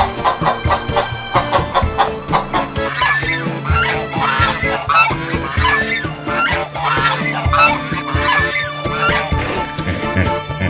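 Canada geese honking, a run of repeated calls starting about three seconds in and stopping near the end, over background music with a steady beat.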